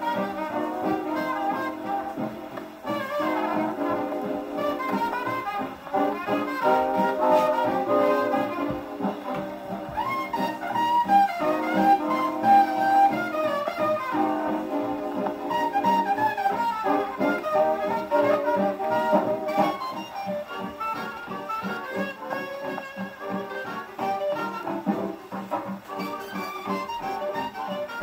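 1930s swing dance band playing an instrumental passage of trumpets, trombones and saxophones, reproduced from a 78 rpm shellac disc on an acoustic phonograph, with a narrow, midrange-heavy sound.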